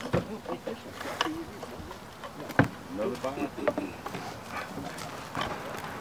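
Honeybees buzzing around an opened bee package, with several handling knocks from the wooden package box, the sharpest about two and a half seconds in.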